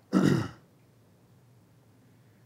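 A man clearing his throat once, briefly, right at the start.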